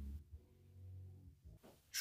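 Near silence: a faint steady low hum that drops away a moment in, leaving only quiet room tone.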